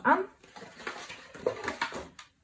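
Light handling noises of paper craft on a work mat: soft rubbing, then a few light knocks in the second half as a paper trimmer is picked up and brought over.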